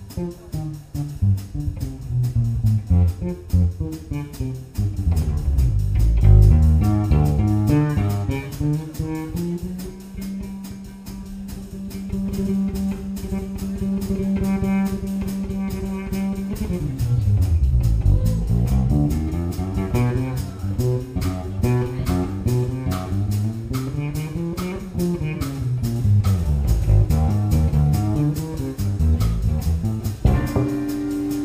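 A live jazz band improvising, with low bass notes that slide up and down, one note held for several seconds in the middle, and drums playing behind.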